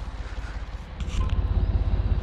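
Tractor engine running at low speed with a fast, even pulse, louder from about a second in, where there is a short rattle.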